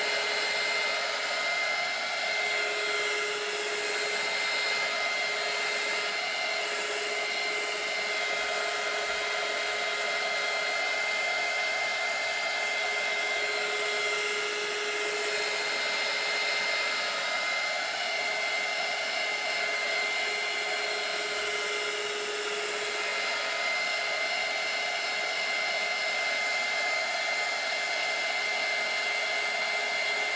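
Small handheld craft heat tool (embossing heat gun) blowing hot air to dry wet marker ink on a canvas: a steady fan whir with a constant high whine.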